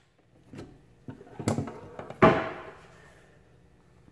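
Handling noises: a few light knocks, then a louder knock a little over two seconds in that rings briefly and fades.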